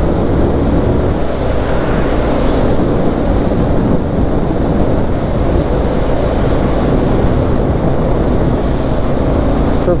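Indian FTR 1200's V-twin engine running at a steady cruise with no change in revs, mixed with wind rushing over the camera microphone.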